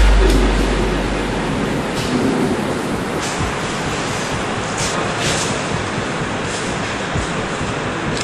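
A deep bass note from the preceding music fades out at the start, leaving a steady, even background noise of a large room with a few faint clicks scattered through it.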